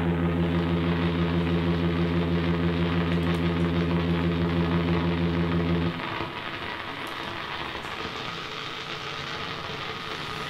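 Modular synthesizer ambient music: a steady low drone with a stack of overtones that cuts off abruptly about six seconds in, leaving a quieter hissing, crackling noise texture.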